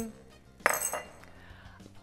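A single short clink of a spoon against a small bowl, a little under a second in, with a brief ring.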